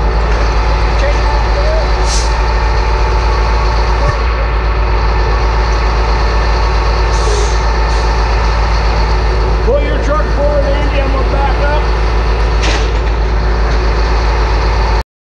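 A heavy wrecker's diesel engine running steadily and loudly at a constant pitch, broken three times by a short hiss of released air: once about two seconds in, once about halfway through, and once near the end.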